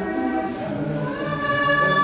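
A choir singing held chords, several voices together, with a higher note coming in about a second in and the sound growing louder.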